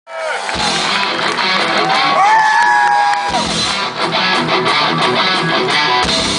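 Rock band playing live through a PA with electric guitars; held guitar notes slide in pitch around the middle, and a heavier low end comes in about three and a half seconds in.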